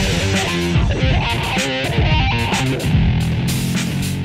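Instrumental guitar music: a guitar playing a quick picked melody over a low bass line and a steady beat.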